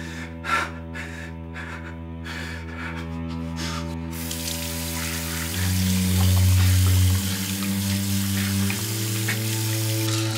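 Low, sustained score chords run throughout, shifting twice. Short, breathy gasps come in the first few seconds. About four seconds in, a bathroom basin tap is turned on, and water runs steadily into the sink for the rest of the time.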